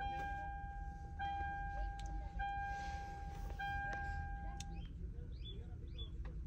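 A car's electronic warning chime sounding after a key is put in and the ignition is switched on. It is one steady beep repeated about every 1.2 s, each running into the next, and it stops about five seconds in. Faint short chirps follow near the end.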